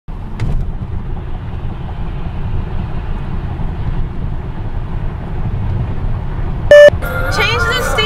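Steady low road and engine rumble inside a moving car's cabin. Near the end a short, very loud beep sounds, followed by a voice singing.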